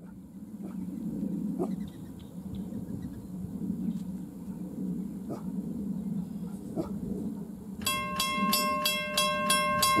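A low steady rumble, then a railroad grade-crossing bell starts ringing about eight seconds in, with quick repeated dings about four a second. The bell is the crossing warning for an approaching train.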